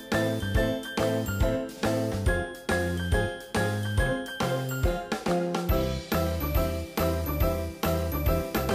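Background music of bright, chiming notes over a bass line, with notes struck at a steady, even pace.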